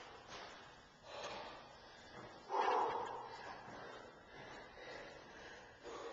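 A man breathing hard, catching his breath after an all-out bout of running in place, with a breath about every second and the loudest one about two and a half seconds in.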